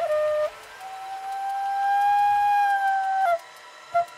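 Concert flute playing a short note, then one long held note of about two and a half seconds that swells slightly and ends with a quick downward flick in pitch.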